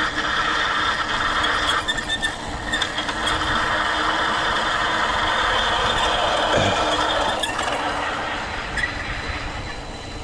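Electric mountain bike rolling steadily along a paved path at cruising speed: a constant hum of knobby tyres on asphalt mixed with a steady whine from the motor and drivetrain.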